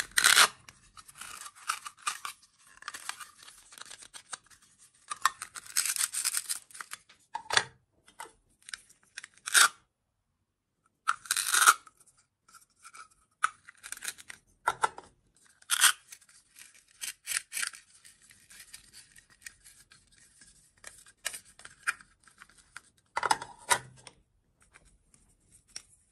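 Hollow plastic toy fruits handled close up: halves pulled apart and pressed back together, with rubbing scrapes and sharp clicks. A few heavier knocks come as fruits are set into a metal muffin tin, and there is a short pause about halfway through.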